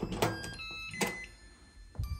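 The metal lever handle and latch of an electronic door lock being worked as the door is pulled open: two sharp clicks about a second apart, the first as the handle goes down and the latch releases.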